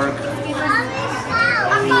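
Children's voices talking and calling out, over a steady low hum.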